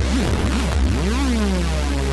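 Novation Supernova synthesizer holding a sustained, bass-heavy note. Its resonant filter sweeps up and down about twice a second, then glides slowly down about a second in, as the filter cutoff is changed.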